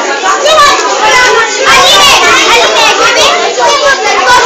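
Many young children's voices talking and calling out at once, overlapping chatter with no single speaker.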